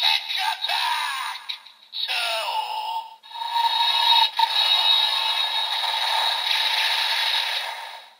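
DX Evol Driver toy's built-in speaker playing its finishing-move sequence with the Dragon Evol Bottle and Lock Full Bottle set: electronic announcer calls and effects in the first few seconds, then a sustained effect that fades out near the end, all thin and tinny with no bass. The announcement is the common 'Attack' finisher call, not 'Finish', because this pair of bottles is not a matched set.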